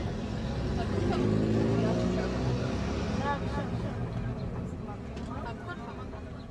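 Outdoor street sound: a vehicle engine rumbling, its pitch rising about a second in, with distant voices calling out over it.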